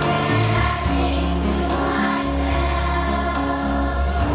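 A children's choir singing over a musical accompaniment with a strong, sustained bass line.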